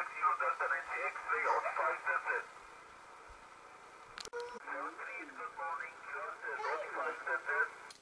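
Single-sideband voice from a Yaesu FT-1000MP Mark-V transceiver's speaker on the 10-metre band: a distant station's thin, band-limited voice over a hiss. The voice stops about two and a half seconds in, leaving only the receiver's hiss, and a sharp click comes just after four seconds. Then more voices come in on the frequency.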